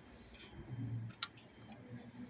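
A few faint, irregular clicks and a brief low murmur over quiet room tone.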